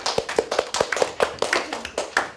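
A small group of children clapping, with the individual hand claps distinct.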